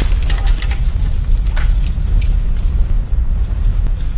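Cinematic logo-intro sound effect: a deep, heavy rumble with scattered crackling, shattering debris over it, starting to fade near the end.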